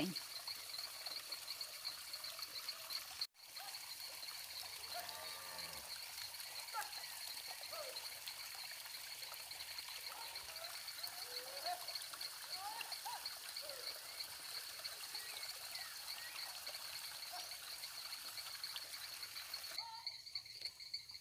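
Pond-side outdoor ambience: a steady, high-pitched pulsing chirr from insects or frogs, with scattered short rising calls in the middle. The sound cuts out for an instant about three seconds in.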